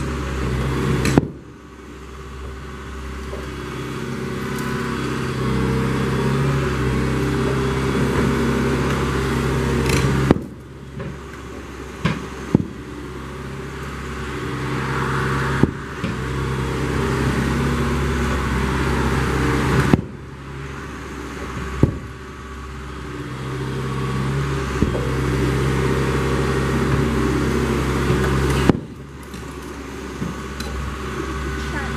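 John Deere excavator's diesel engine running and swelling under hydraulic load as it swings a wrecking ball, then dropping back suddenly four times. Several sharp knocks come through the engine noise, mostly just as the engine drops.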